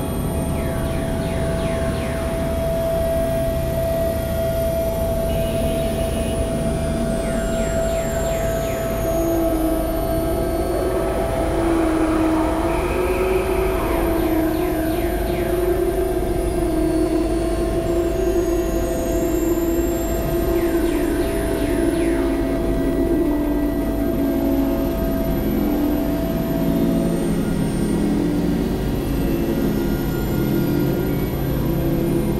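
Dense experimental drone-and-noise mix: a steady low rumble under a held mid-pitched tone that stops near the end. A lower, wavering tone comes in about a third of the way through, and curving sweeps recur every several seconds.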